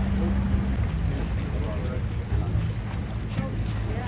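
A boat's engine running with a steady low hum that shifts lower about a second in, with wind on the microphone.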